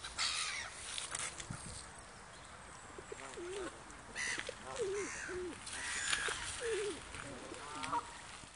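Waterbirds calling, gulls among them: a string of short calls, most of them in the second half.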